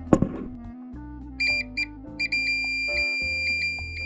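Digital multimeter's continuity buzzer beeping as its probes touch a fuse's terminals: two short beeps, then one steady high tone held for about three seconds. The unbroken tone shows continuity, meaning the fuse is good. A single click comes just at the start.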